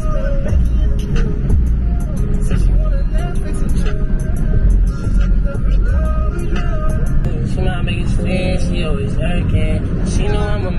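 Music with a singing voice and heavy bass, over the low steady rumble of a car driving.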